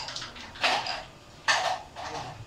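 Carrom striker and coins clacking against each other and the board's wooden frame: two sharp clacks, the first about half a second in and the second about a second later.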